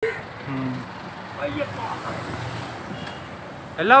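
Street traffic going by, a steady hum with faint voices in it; a man starts speaking loudly near the end.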